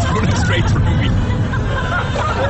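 Several voices talking over one another inside a moving car, over a steady low rumble of road and engine noise.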